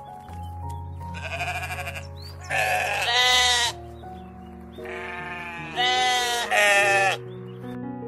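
Sheep bleating: several long, wavering bleats, the loudest about three seconds in and again near the end, over steady background music.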